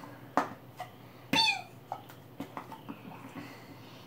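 Light taps and knocks from a tin of dip being handled, with a short falling vocal sound about a second and a half in.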